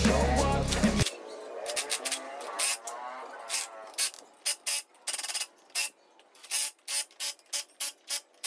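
Background music that cuts off about a second in, then a cordless impact wrench run in many short trigger bursts as it drives the nuts holding a wheel onto the axle hub.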